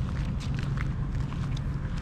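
Footsteps on a paved promenade over a steady low outdoor rumble, with faint scattered ticks.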